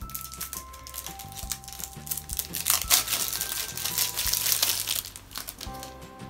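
Packaging of a makeup palette crinkling and rustling as it is handled and opened, busiest and loudest in the middle. Background music with held notes plays underneath.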